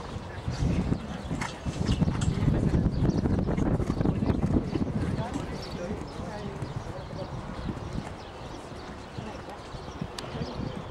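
A show-jumping horse's hooves cantering on sand footing, a run of dull beats that is loudest in the first half, with indistinct voices in the background.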